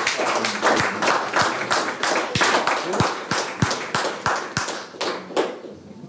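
Audience applauding: many people clapping at once, dying away about five and a half seconds in.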